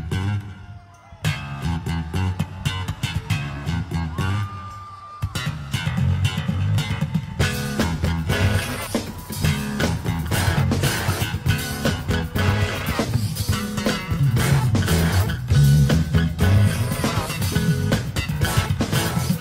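A live band jamming: a bass guitar riff with little else over it for the first few seconds, then the full band with guitar and drums comes in about five seconds in.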